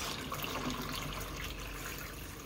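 Water pouring steadily from a plastic gallon jug into a plastic bowl that already holds water, filling it around a submerged ceramic filter.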